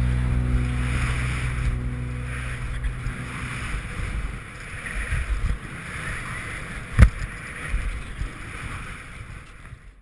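The music trails off in the first two seconds, leaving the rushing wind and snow noise of a skier's helmet camera running down powder. There is one sharp knock about seven seconds in, and the whole sound gets steadily quieter until it cuts out at the end.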